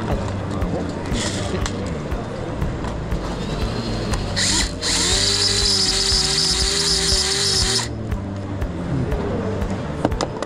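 Tokyo Marui battery-powered BB autoloader's electric motor whirring as it feeds BBs into an airsoft magazine: a short burst about a second in, then a steady run of about three and a half seconds from around the middle that stops abruptly.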